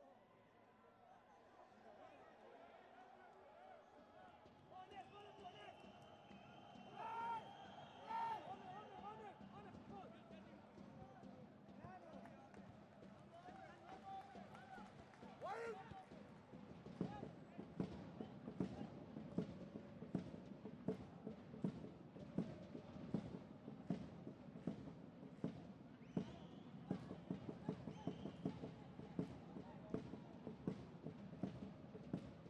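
Faint pitch-side sound of a football ground: scattered shouts and calls from players. Then, from about halfway through, a steady rhythmic beat from the crowd at about three beats every two seconds.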